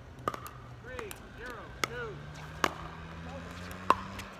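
Pickleball rally: sharp pocks of paddles hitting the hollow plastic ball, about half a dozen spread over a few seconds, the loudest two near the end. A few brief squeaks come between the hits.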